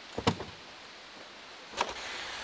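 A Kia Soul's rear hatch being handled: a couple of light clicks, then a single sharp knock near the end as the hatch is shut.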